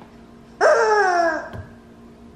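A dog gives one drawn-out vocal call that starts suddenly and falls in pitch for under a second, followed by a light knock.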